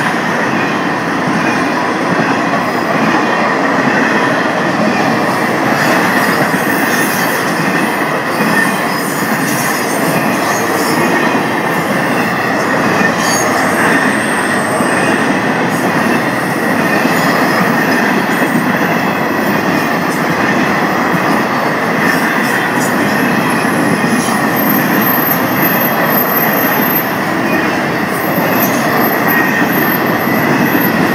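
Florida East Coast Railway freight train's cars rolling steadily past, a continuous rumble of wheels on rail.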